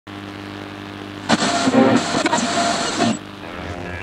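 Classic American V8 muscle car engine idling, then revved loudly from about a second in until near three seconds, before settling back down.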